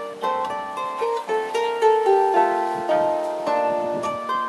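Solo harp being played: plucked notes and chords ringing on over one another, mostly in the middle range.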